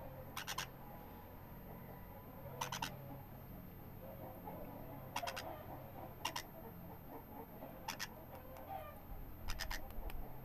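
A yellow-sided green-cheeked conure chick being hand-fed from a syringe, making short sharp clicking calls, often in quick pairs, every second or two over faint soft chatter.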